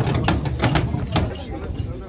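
Cow's hooves knocking and clattering on the truck's wooden boards as it is led down off the truck, about five sharp knocks in the first second or so.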